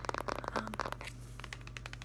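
Plastic-wrapped pack of canvas panels crinkling and crackling as it is handled, with a dense run of sharp crackles in the first second that thins out afterwards.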